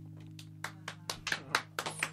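The last acoustic guitar chord of a live song rings out and fades, while a few people start clapping about half a second in, the claps coming faster toward the end.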